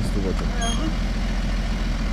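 BMW 535d's three-litre twin-turbo straight-six diesel, remapped to Stage 2, idling steadily with an even low rumble.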